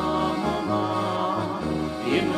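A man and a woman singing a duet over brass-band (dechovka) accompaniment. The bass line moves in held notes under the voices.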